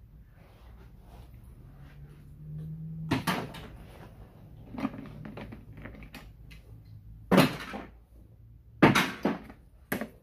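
Small metal switch parts and hand tools being handled and set down on a worktable: a series of sharp clacks and knocks, loudest about seven and nine seconds in.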